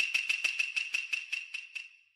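A quick run of sharp clicks over a steady high ringing tone, about six a second, coming slightly faster and fading out toward the end.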